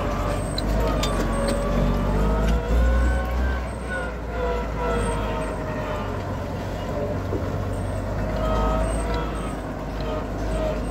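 IMT 5136 turbo tractor's turbocharged diesel engine running as the tractor drives along a dirt track: a steady low rumble with a higher note that wavers up and down in pitch.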